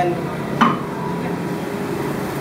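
Steady mechanical hum, with a short voice sound about half a second in.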